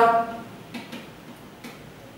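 A marker pen writing on a whiteboard: a few faint, uneven ticks and taps as the letters of a word are stroked out.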